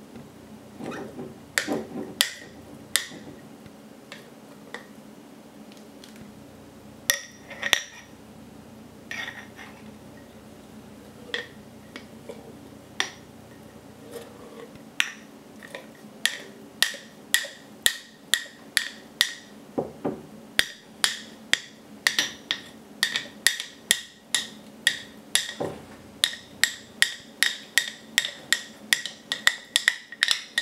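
A metal spoon clinking against the inside of a glass mason jar while thick sourdough starter is stirred. The clinks are scattered at first, then from about halfway settle into a quick steady rhythm of about two a second.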